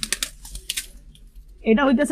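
Quick, irregular clicks and rattles of a metal-mesh pigeon cage as a hand reaches in and grabs a pigeon. A man starts speaking near the end.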